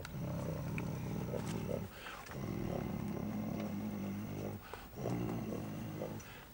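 A man imitating a car engine with his voice: a rough, buzzing, low drone in three stretches of one to two seconds each, with short breaks between, as if driving a toy car.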